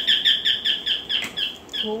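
A bird chirping in a quick run of short, high, slightly falling chirps, about five a second, that stops just before the end.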